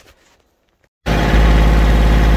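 A Kioti CK2610 tractor's three-cylinder diesel engine running steadily at about 2,200 rpm, its fuel screw still at the stock setting. The engine sound cuts in abruptly about a second in, after near silence.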